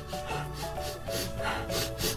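A person sniffing repeatedly in short breaths close to the microphone, smelling a scented toy, over quiet background music.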